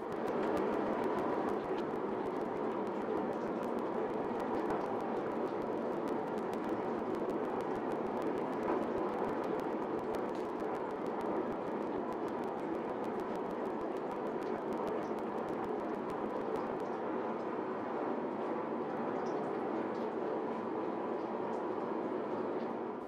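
Propane forge burner running with a steady rushing noise, heating a clay-coated katana blade evenly toward quenching temperature, about 1500 °F.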